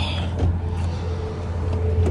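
A steady low mechanical hum, with a faint steady higher tone above it, starting suddenly.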